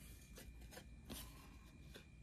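Faint handling of cardboard baseball trading cards: a few brief, soft flicks and slides as cards are moved off the stack in the hand, the clearest just past a second in, over low room tone.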